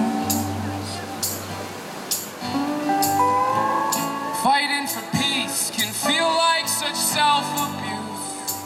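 A live acoustic band playing: strummed acoustic guitars over upright bass and a drum kit keeping a steady beat. A voice sings from about three seconds in.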